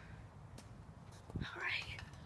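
Mostly quiet, with a person's faint whispering near the end.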